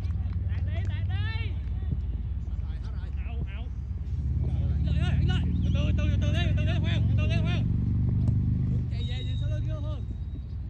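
Several people's voices talking and calling out, with no clear words, over a steady low rumble that grows louder from about four seconds in until about nine seconds.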